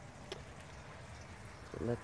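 Faint, steady trickle of water running into a 1939 Bolding 3-gallon urinal cistern as it fills from a hose, with one small click about a third of a second in.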